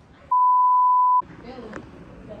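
A single steady high-pitched censor bleep, just under a second long, that blanks out all other sound while it plays.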